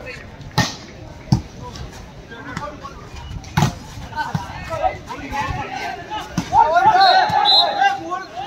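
Volleyball struck by players' hands in a rally: three sharp smacks, the first just after the start, the next about a second later and the last a couple of seconds after that. Players then break into loud shouting near the end.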